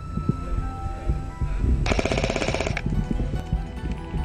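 G&G MG42 airsoft electric machine gun firing one burst of about a second, a fast, even rattle of shots starting about two seconds in.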